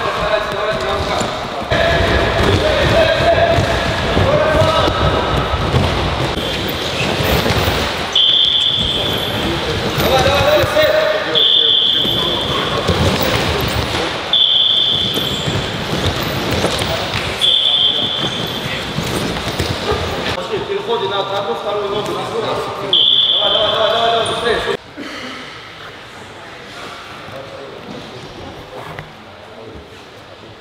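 Warm-up in a wrestling hall: repeated thuds and footfalls of wrestlers on the mats, with men's voices. A short high tone sounds five times, about three seconds apart. Everything gets much quieter about 25 seconds in.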